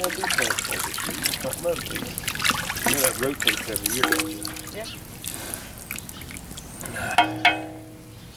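Wooden paddle stirring a big pot of chili, the thick liquid sloshing and slapping in irregular strokes, with faint voices in the background.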